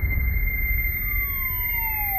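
Sci-fi trailer sound design: a steady high electronic tone over a low rumble, with a whine that starts about halfway through and glides steadily down in pitch.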